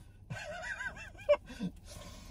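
A man laughing in a run of quick, high-pitched giggles, with one louder burst a little over a second in.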